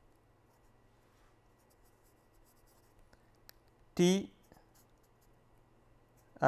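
Faint scratching of a pen writing on paper, with a few light ticks.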